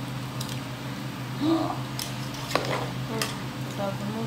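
A metal utensil stirring chunks of potato and plantain in a large metal cooking pot, with a few sharp clicks and scrapes against the pot's side over a steady low hum.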